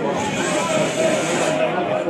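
Voices talking, with a hiss for the first second and a half.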